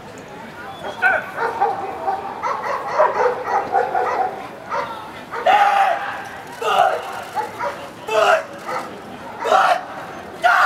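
A dog barking: loud single barks a second or so apart through the second half, over a busy background of voices.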